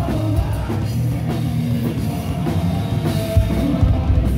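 A rock band playing live and loud: drum kit hits over electric guitar and bass.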